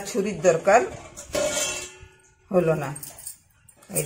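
A woman speaking a few short phrases, with a brief crackling tear about a second in as a jackfruit's stalk is twisted and broken away from the fruit.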